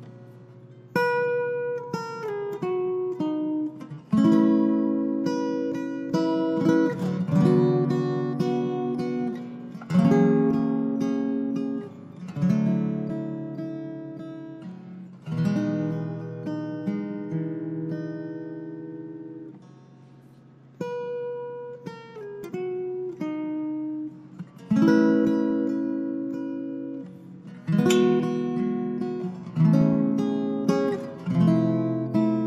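Taylor six-string baritone guitar played solo: chords strummed and picked every few seconds and left to ring out and fade, with a quiet lull about two-thirds of the way through.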